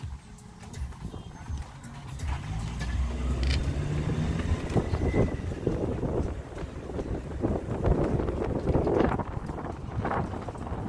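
A car driving, heard from inside: steady engine and road rumble with frequent small knocks and rattles. The engine note rises about three seconds in as it picks up speed.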